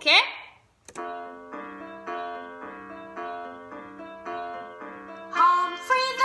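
Recorded children's song played back: a keyboard introduction of repeated chords, about two a second, starting after a brief click. Singing comes in near the end.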